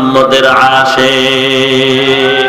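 A man's voice chanting a sermon in a melodic, mournful tune, holding one long steady note from about halfway through.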